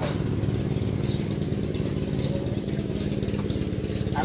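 A small engine running steadily at an even idle, a continuous low drone with a fast regular pulse.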